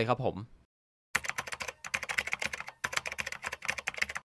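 Rapid typing on a computer keyboard: a dense run of key clicks starting about a second in, with two brief pauses.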